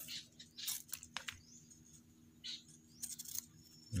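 Short, scattered rustles and crackles of fresh coconut-leaf strips being bent and woven by hand, over a faint steady low hum.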